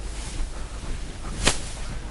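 A single sharp click about one and a half seconds in, over steady low room hum.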